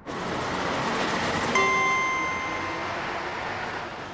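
Cartoon sound effect of a bus's wheels turning on driving-simulator rollers: a steady rushing noise that starts suddenly, with a held electronic tone coming in about one and a half seconds in and fading out a couple of seconds later.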